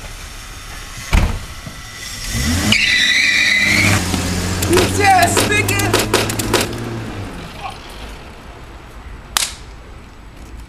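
A car door slams, then a car engine revs up and runs as the car pulls away, with a brief high squeal as it sets off. There are several clicks and knocks while it runs, and another sharp slam near the end.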